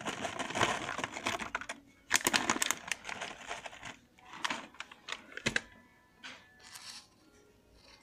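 Dried cranberries poured from a plastic bag onto nuts and fruit in a plastic bowl: a dense patter of small clicks and bag rustling at first, then a few shorter bursts as the last of them are shaken out.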